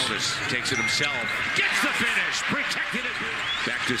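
NBA television broadcast audio: a commentator talking over arena crowd noise, with a basketball bouncing on the court.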